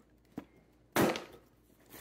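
A kitchen knife stabbed down into a cardboard box: one sharp puncture about a second in, with a faint tap shortly before.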